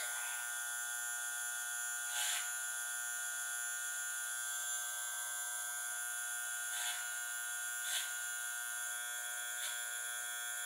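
Electric hair clippers running with a steady buzz while cutting a blunt line through straight wig hair, with a few brief louder moments along the way.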